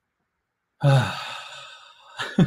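A man's sigh: a voiced out-breath that sets in suddenly about a second in and fades away, letting go of a deep breath.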